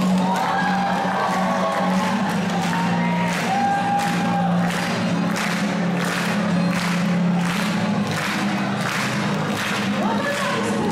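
A singer accompanying herself on acoustic guitar in a live performance, with the audience's voices and cheering heard in the hall. Evenly spaced strokes keep a steady rhythm through the second half.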